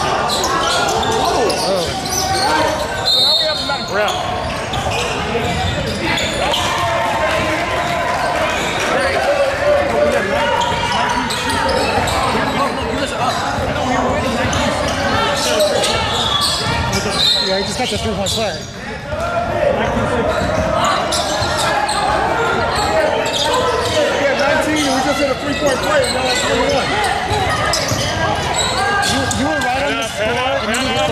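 A basketball being dribbled on a hardwood gym floor in play, short repeated bounces throughout, with voices calling from the sidelines over it.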